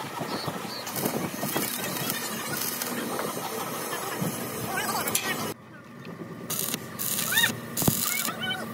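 Voices and metal knocks in a workshop, then, after a sudden drop about two-thirds through, short bursts of arc welding crackle on sheet steel.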